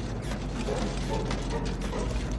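A fire-gutted car driving slowly, its wrecked body and running gear clanking and rattling in a rapid, irregular clatter over a low engine rumble.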